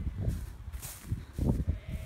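Irregular footsteps swishing through dry long grass, with thuds from the phone being carried at a walk. Near the end there is a faint, held sheep bleat.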